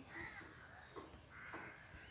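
Crows cawing faintly, with two light knocks around the middle.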